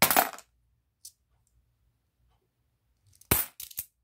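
Korean 500-won coins clinking as they are handled and dropped onto other coins: a burst of clinks at the start, a single small click about a second in, and another quick run of several clinks near the end.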